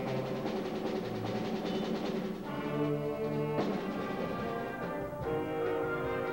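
School wind band playing held chords of brass and woodwinds, with a sharp new attack about three and a half seconds in.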